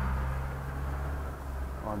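A steady low mechanical hum that fades out a little before the end, with faint background noise.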